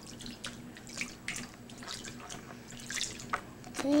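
Bath water in a baby's tub in a kitchen sink splashing and dripping in small irregular splashes, over a faint steady hum.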